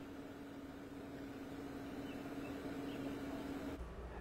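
Faint outdoor background noise with a steady low hum, which cuts off shortly before the end.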